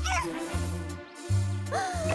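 Cartoon background music with a steady bass line, over which a high squeaky character yelp drops in pitch right at the start and a second squeaky cry rises and then holds near the end.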